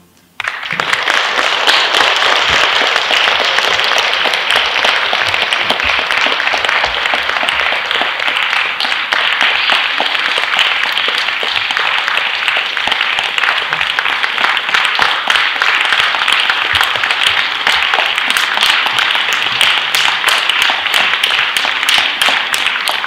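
A concert audience breaks into applause about half a second in and keeps clapping steadily.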